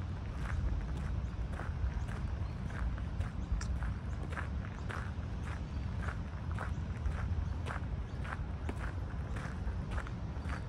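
Footsteps of a person walking at a steady pace on a park path in rubber-soled Adidas Samba trainers, about two steps a second, over a steady low rumble.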